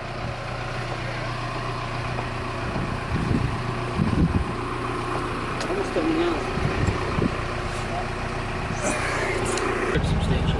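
Steady engine hum and cabin noise heard from inside a pickup's cab, with faint voices underneath.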